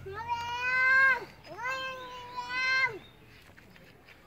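A high-pitched voice calling twice, each call held at a steady pitch for about a second and dropping at the end.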